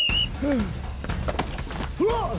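A brief high tone at the start, then a short vocal cry and a few sharp thumps and quick footfalls as a man tackles another and runs off carrying him, over a low rumble.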